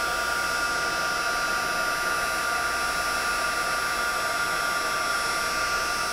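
Embossing heat tool running steadily, a blower hiss with a constant high hum, as it melts gold embossing powder along the edge of the cardstock.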